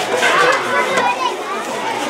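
Many schoolchildren's voices chattering and calling out over one another, mixed with adult talk.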